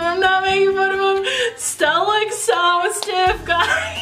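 Young male singers performing a ballad on stage: a long, high held note, then a new sung phrase that slides between notes. A low bass comes in about three seconds in.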